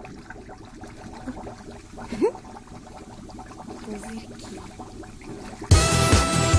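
Faint water in a large foam-filled bathtub, a low steady wash, with one short rising pitched sound about two seconds in. Loud music starts abruptly near the end.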